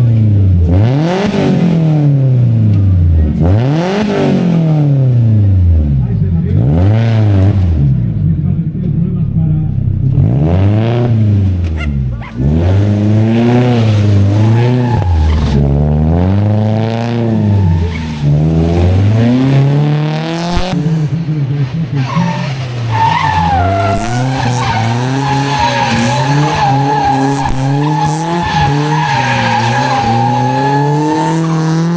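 A Peugeot 206 rally car's engine revving hard and dropping back over and over as it drifts around a barrel. Tyres squeal with a steady high whine through the last third.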